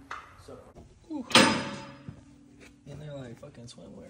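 A single loud bang, something hard struck or slammed, with a short ringing tail that dies away within about a second, a third of the way in. Faint voices come before and after it.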